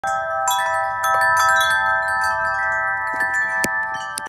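Metal tube wind chime ringing, several tubes sounding together in long overlapping tones. Light clinks of the tubes striking renew the ringing about half a second in, around one and one and a half seconds, and once more near the end.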